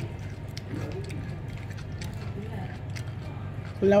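Steady low room hum with faint background voices and a few small clicks, then a woman's voice starting loudly just before the end.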